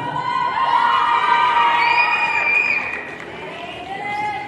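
Audience cheering and screaming in many high voices, loudest for the first three seconds, then dying down.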